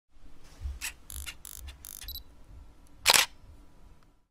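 Intro sound effect of camera mechanism clicks: a quick series of shutter- and lens-like clicks over a low rumble, then one much louder burst about three seconds in.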